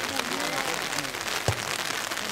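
Voices of spectators and players talking and calling out over a steady patter of rain, with one sharp knock about one and a half seconds in.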